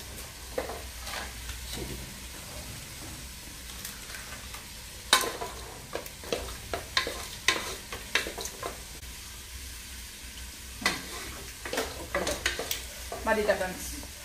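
Wooden spatula stirring and scraping a thick potato masala in an aluminium pressure cooker, with irregular knocks and scrapes of wood against the metal pot.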